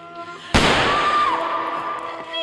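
A single gunshot from a pistol about half a second in, sharp and loud with an echoing tail that dies away over about a second, over dramatic background music.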